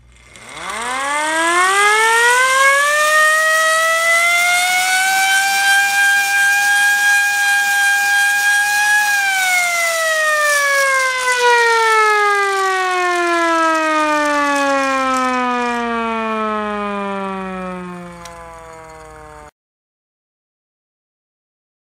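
Hand-cranked metal air raid siren (YaeTek, rated 115 dB) being wound up: its wail climbs in pitch over the first few seconds and holds a steady high note. After about nine seconds it slowly falls in pitch as the rotor spins down, until the sound cuts off abruptly near the end.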